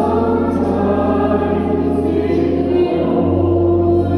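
Choral music: a choir holding sustained notes over a steady low drone, the low note shifting about three seconds in.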